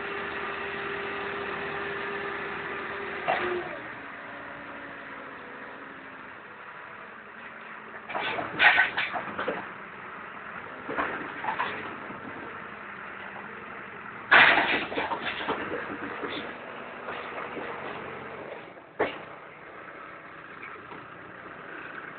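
Manitou telehandler's diesel engine running steadily, with a steady whine over it for the first few seconds that ends with a clunk. Several short, loud bursts of noise break in later.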